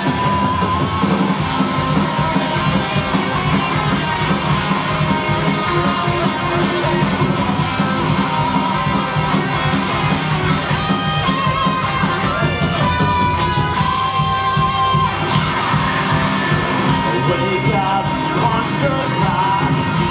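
Live rock band playing a song at full volume: distorted electric guitars, bass and drums, with the singer yelling and singing over them. The full band kicks in right at the start.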